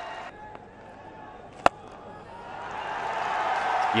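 A cricket bat strikes the ball once with a sharp crack, about a second and a half in. The crowd's cheer then swells over the next two seconds as the shot runs away.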